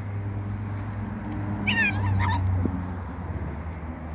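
Silver fox giving a short, high-pitched wavering squeal in two quick parts, about two seconds in, during rough play between two foxes. A steady low hum runs underneath.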